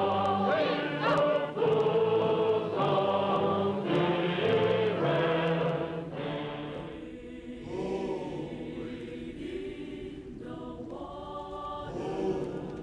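Choir singing in Chinese on a 1940s war-documentary film soundtrack. It is full and loud for the first half, then softer, and swells again near the end.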